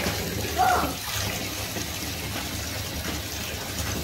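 Tap water running steadily into a bathtub of foaming bubble bath.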